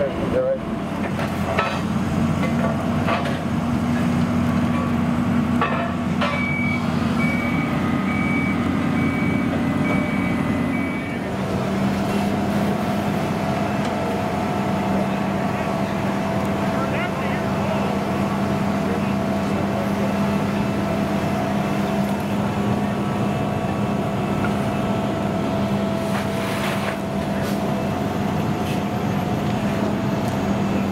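Fire truck diesel engines running steadily with a constant hum, which drops slightly in pitch about eleven seconds in. A reversing alarm beeps from about six to eleven seconds in.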